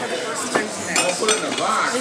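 Dishes and cutlery clinking on a table, a few sharp clinks in quick succession over background talk.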